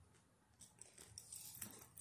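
Near silence, then a few faint short clicks and rustles of handling from about half a second in.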